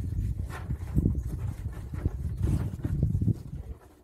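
A dog nosing and pawing at a small ball on a rug: a run of low, irregular thumps and scuffles that dies away near the end.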